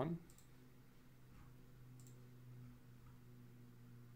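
Very quiet room tone with a steady low hum, and two faint computer mouse clicks, about a third of a second and two seconds in.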